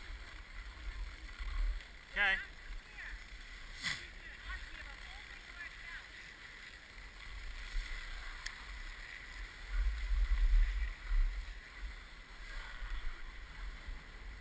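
Wind buffeting the microphone of a moving skier, gusting strongest about ten seconds in, over a faint hiss of skis sliding on packed snow. A brief high, wavering voice comes about two seconds in, and there is a sharp click near four seconds.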